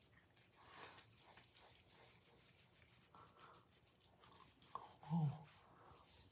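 Faint, soft wet clicks and squishes of fingertips massaging a cleanser over the skin of the face, with a short spoken "Oh" about five seconds in.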